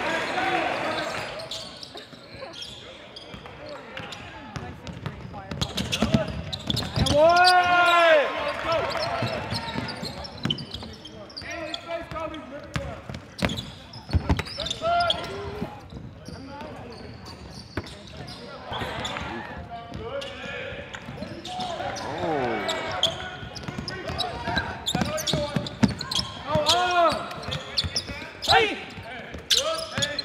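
Live court sound from a high school basketball game: a basketball bouncing on the hardwood floor, with voices and several short pitched squeals that rise and fall in pitch, the loudest about 8 seconds in.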